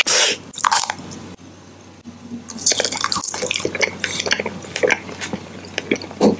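Close-miked chewing and wet mouth sounds: a loud crackle right at the start, a quieter stretch, then from about two and a half seconds in a quick run of wet clicks and smacks.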